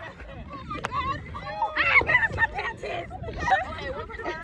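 Several people's voices talking over one another, with no clear words, over a low steady rumble. A single sharp click sounds about a second in.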